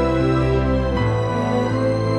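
Background music: sustained chords, moving to a new chord about a second in.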